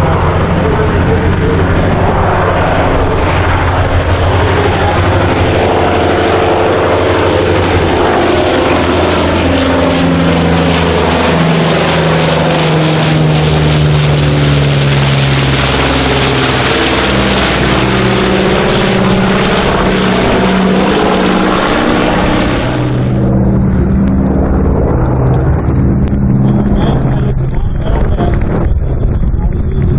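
Martin Mars flying boat's four Wright R-3350 radial piston engines and propellers droning loudly as it flies low overhead. The engine note falls in pitch as it passes over, about halfway through. The higher part of the sound drops away abruptly about four-fifths of the way through, while the low drone carries on.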